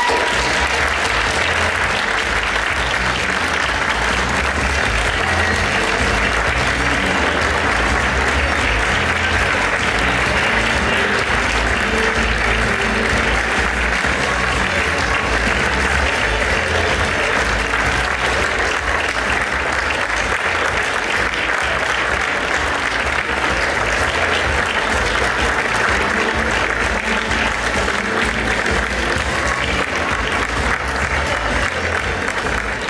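A large audience giving a standing ovation: loud, steady, unbroken applause that starts suddenly and keeps going.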